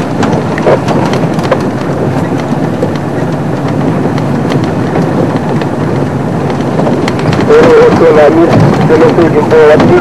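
Safari game-drive vehicle running along a bush track, a steady rough rumble. A man's voice talks over it in the last two and a half seconds.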